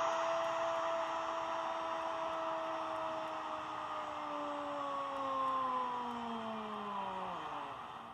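A football commentator's long drawn-out goal shout, a single held "Gooool" lasting about seven and a half seconds. Its pitch sags lower toward the end and it stops shortly before the end, over steady crowd noise, heard through a TV speaker.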